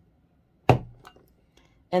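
A crinkle cutter chopping down through a block of scented wax onto a craft cutting mat: one sharp chop about two-thirds of a second in, followed by a few faint clicks.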